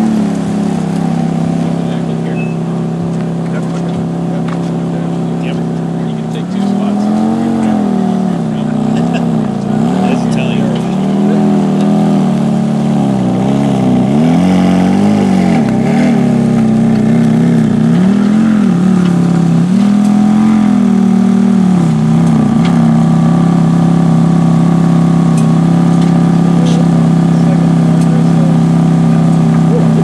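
Ferrari F430 Spider's V8 running at low speed. Through the middle its note rises and falls several times with throttle as the car is manoeuvred, then it settles into a steady idle, heard close to the quad exhaust tips near the end.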